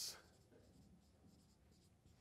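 Faint strokes of a marker writing on a whiteboard, barely above room tone.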